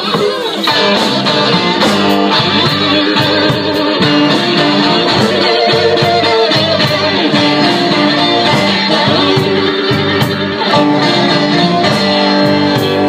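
Live blues band playing: an electric guitar leads over bass, drums and keyboard, with a steady drum beat.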